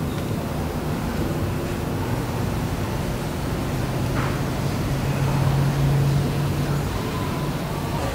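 Steady outdoor background noise with a low droning hum that grows louder in the middle and then eases off.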